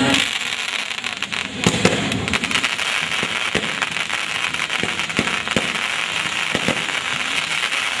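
Firecrackers going off in a dense, continuous crackle, with a few louder pops standing out, the loudest about two seconds in.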